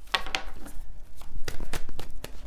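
Deck of tarot cards being shuffled by hand: short papery riffles and taps in two bursts, one near the start and a longer one in the second half.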